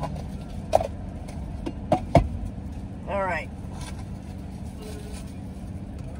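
Car engine idling steadily, heard from inside the cabin, with a few sharp clicks and knocks in the first two seconds or so.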